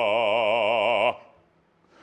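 Operatic bass voice holding a low sung note with a wide, even vibrato, which breaks off cleanly about a second in.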